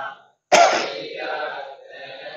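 A man clears his throat into a PA microphone, once: a sudden loud burst about half a second in that fades away over the next second or so.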